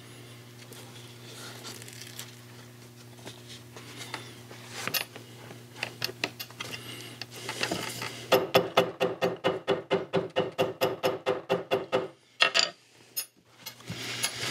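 Small hammer tapping a freshly glued leather tab down over a D-ring, setting the contact-cement bond: a few light, scattered taps, then a fast, even run of sharp taps, about five a second, for some four seconds, ending in two or three single knocks.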